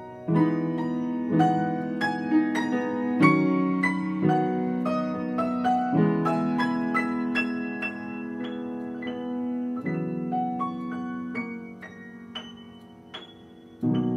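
Schwechten upright piano being played on its newly fitted under-damper action, a try-out after the restoration: a slow piece with sustained low chords under a single-note melody, growing softer near the end.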